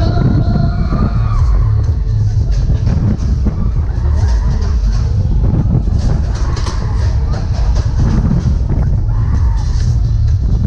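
Wind buffeting the microphone of a camera riding a spinning Schaak Orbiter, a steady low rumble, with fairground music playing over it.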